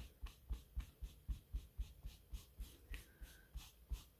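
A damp scrap of velvet rubbed briskly back and forth over velvet pile, a faint brushing scrape at about four strokes a second, each with a soft dull knock. The pile is being dampened so that crushed fibres lie back down.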